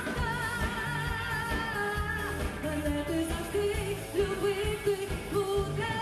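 Pop-rock song played live: a woman sings long held notes with vibrato over a full band with a steady beat.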